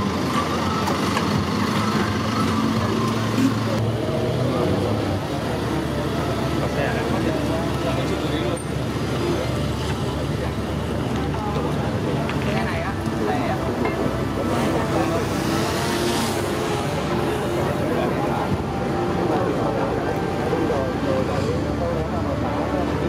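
A motor vehicle running steadily, with a murmur of people talking around it.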